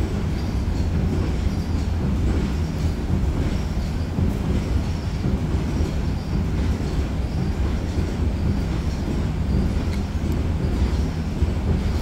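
A steady low hum with a rumble underneath, unchanging throughout.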